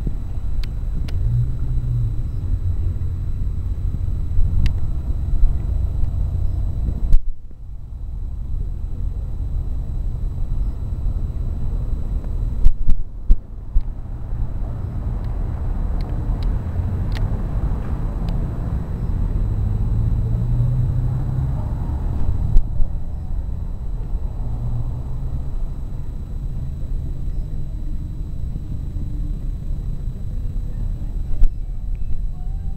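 Downtown street ambience heard while walking, dominated by a steady low rumble with motor traffic. The traffic noise swells for several seconds about halfway through, and the sound briefly drops out twice.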